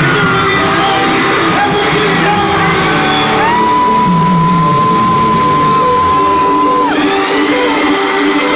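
Live pop concert heard from among the crowd in a large arena: amplified music with singing, and fans whooping and yelling. In the middle, a long high note is held steady for about three seconds.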